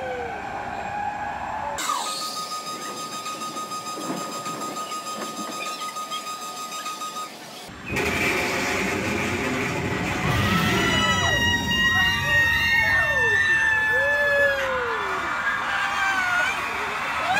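A steady high electronic tone pulsing a few times a second, then riders on a free-fall drop tower screaming and whooping in long rising and falling cries as the car drops.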